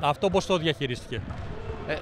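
A man talking briefly, then a basketball bouncing on the court floor in the background.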